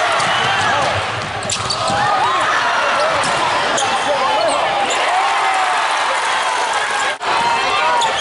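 Basketball game on a hardwood court: sneakers squeaking and a ball bouncing, over shouting and crowd voices in a large hall. The sound drops out abruptly for an instant about seven seconds in.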